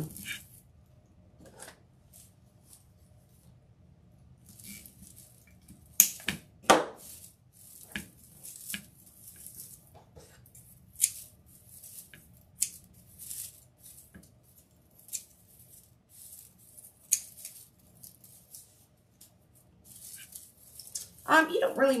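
Scissors snipping raffia strands on a deco mesh wreath in scattered single cuts, a few clearly louder than the rest, with quiet handling of the mesh between.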